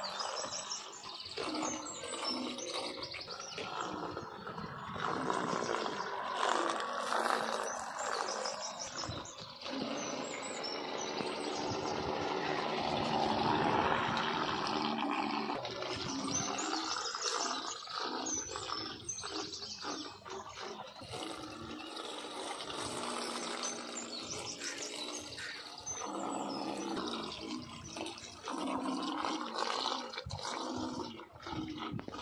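Nature sound-effects track: birds chirping over a steady rush of water, swelling louder about halfway through.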